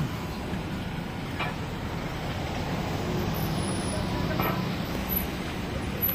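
Steady hum of road traffic on a town street, with faint passers-by voices about a second and a half in and again near the end.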